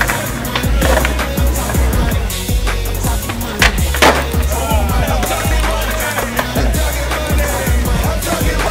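Skateboard wheels rolling on a concrete sidewalk, with two sharp clacks a little past halfway as a board is popped for a trick and lands. Music plays throughout.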